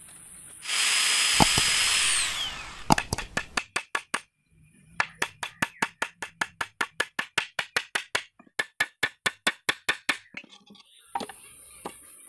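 A power drill runs for about a second and a half and winds down with a falling whine. Then a hammer drives a nail into a wooden plank with quick, evenly spaced blows, about five a second, for most of the rest.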